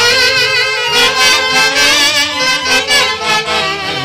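Live instrumental music from an Andean orquesta típica: a saxophone section playing the melody together with a wide, wavering vibrato over a stepping bass line.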